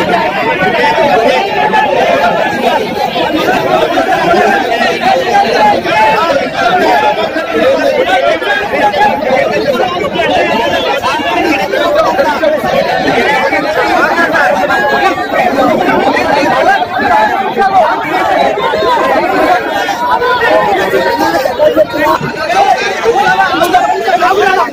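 Large crowd of people talking and calling out over one another, a loud, continuous babble of many voices.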